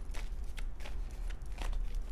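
A deck of tarot cards being shuffled overhand, the cards slapping and flicking against each other in quick, irregular strokes.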